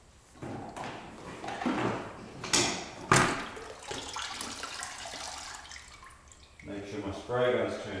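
Painting gear being shifted about: scraping and rustling, with a couple of sharp knocks about two and a half and three seconds in, and some muttered words near the end.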